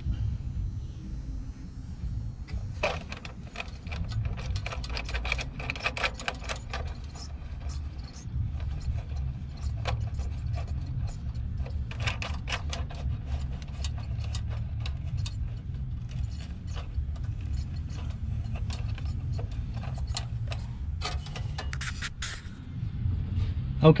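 Small metal clicks and clinks in bursts as a nut and washer are run down a stud to clamp a crimped ring terminal against an aluminium trailer light bracket. A steady low rumble runs underneath.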